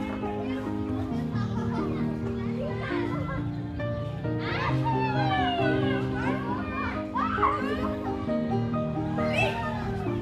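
Children's voices calling out and shouting while playing, busiest in the middle, over steady background music with sustained notes.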